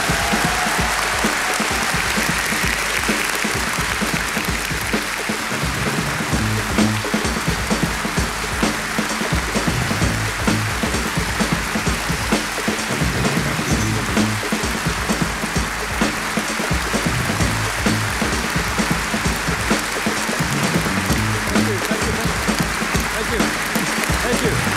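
Large audience applauding steadily, with sustained clapping throughout.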